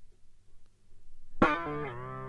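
Jazz-fusion recording: a short, nearly silent break, then about one and a half seconds in a sustained electric guitar note played through effects comes in sharply and is held, its pitch bending slightly.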